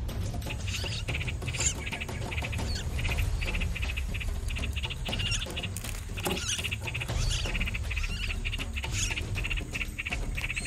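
Nestling songbirds chirping in distress as a large grasshopper attacks one of them in the nest: rapid, high, repeated chirps over a low rumble.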